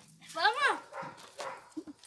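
A dog barking: one clear bark about half a second in, then fainter yips.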